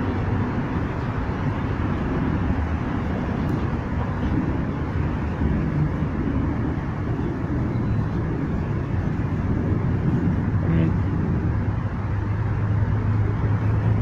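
A steady low motor hum that does not change in pitch, with outdoor street noise around it.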